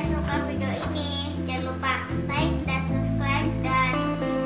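Background music: a children's song, a child's voice singing over a bass line that steps from note to note.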